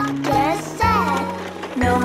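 Children's background music with a bass line, with a few swooping pitched glides in the first second or so.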